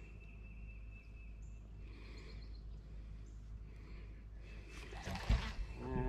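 Low steady rumble of an open fishing boat on a lake, with a faint high whine in the first few seconds, then a single loud knock about five seconds in.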